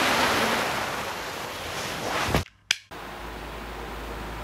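Loud hiss of television static that starts abruptly, eases slightly and cuts off about two and a half seconds in with a click, followed by a second click and a fainter steady hiss with a low hum.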